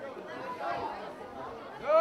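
Overlapping voices at a soccer match chattering and calling out, with one loud, drawn-out shout near the end.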